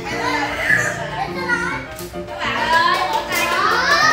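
A group of young children chattering and calling out over music playing.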